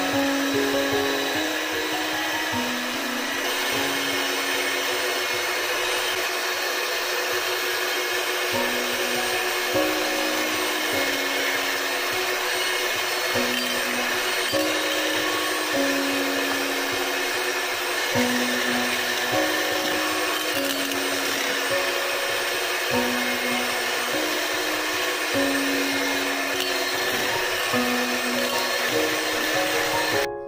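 Electric hand mixer running steadily, its twin beaters whisking runny cake batter. Background music carries a simple melody of held notes underneath.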